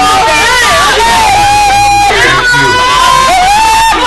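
Several women wailing and crying out at once in anguish, their long, high cries overlapping.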